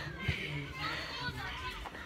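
Children's voices, faint and further off, talking and calling out during outdoor play.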